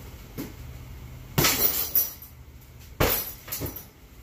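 Heavy punching bag hung on a chain struck hard twice, about a second and a half apart, each sharp smack trailing off briefly as the chain rattles, with lighter hits between.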